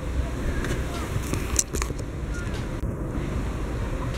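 Low, steady rumble of wind on the microphone, with a couple of light knocks about a second and a half in.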